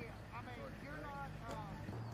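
Indistinct voices in brief, unclear snatches of talk over a steady low hum.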